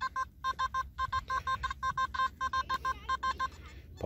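Nokta Makro Simplex metal detector giving a rapid run of short beeps, about five a second, as the coil sweeps over a target; the beeps stop shortly before the end. The signal is jumpy, which could be anything from a bottle cap, pull tab or foil to can slaw.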